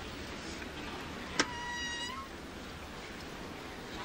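Steady murmur of a large ice arena. About a second and a half in comes a sharp click, followed at once by a short, high squeak lasting under a second that rises slightly at its end.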